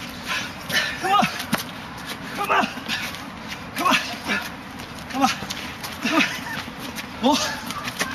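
Hands and forearms slapping and knocking together in close-range Wing Chun gor sau sparring, with short, sharp vocal calls about once a second.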